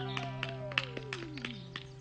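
Acoustic guitar chord ringing out and slowly fading, while a single note slides steadily down in pitch over nearly two seconds. Several light taps come at about three a second.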